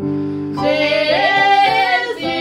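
A woman singing a melody over sustained instrumental backing music. Her voice comes in about half a second in and climbs in pitch.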